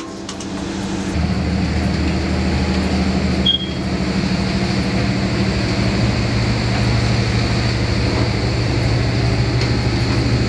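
Steady low drone of a ship's running machinery, a constant hum with no rhythm, and a brief high chirp about three and a half seconds in.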